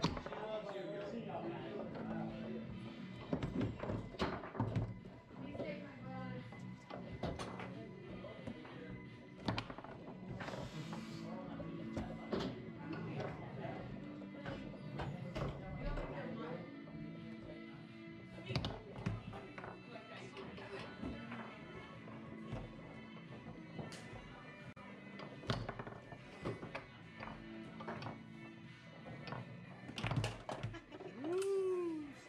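Foosball match in play: irregular sharp knocks and thunks as the ball is struck by the plastic men and hits the table walls, with the rods clacking. Background music and indistinct voices in the room run underneath.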